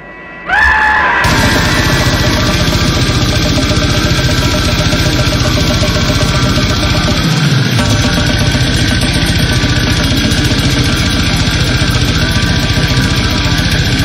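Slamming brutal death metal from a full band: distorted guitars, bass and fast, dense drumming. It kicks in hard about a second in, after a brief quieter break.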